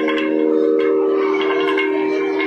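Steady drone from an electronic shruti box: several tones held at an even pitch without a break, with a few faint clicks above it.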